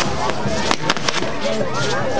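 Fireworks on a burning castillo tower going off, with three sharp cracks in quick succession about a second in, over the voices of a crowd and music.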